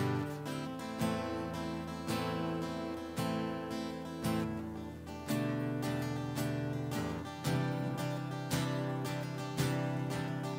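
Acoustic guitar strummed in a slow, steady rhythm, with a new chord about once a second and ringing between strokes. This is an instrumental passage of a worship song, with no singing.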